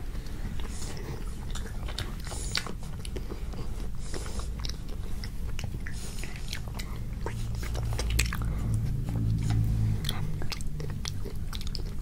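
Close-miked biting and chewing of chocolate-and-almond-coated ice cream bars, the hard chocolate shell breaking in many small, sharp crackles.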